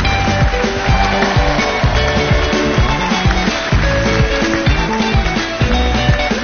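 Up-tempo dance music with a heavy, regular beat.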